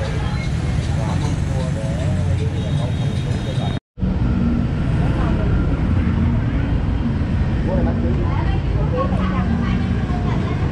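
Street traffic of passing motorbikes, a steady low rumble with voices chattering over it. The sound cuts out completely for a moment about four seconds in.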